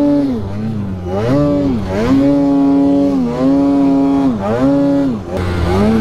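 Two-stroke mountain snowmobile engine working in deep powder, its revs repeatedly dropping and climbing again as the throttle is eased and opened, about five times in six seconds.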